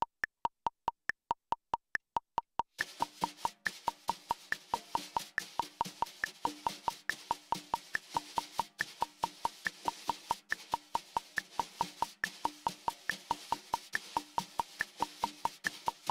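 Wire brushes on a snare drum playing inverted double-stroke taps with a lateral sweeping motion, in an even sixteenth-note pattern at a slow tempo. A metronome ticks steadily throughout with a stronger click on each beat, and the brushes join it about three seconds in.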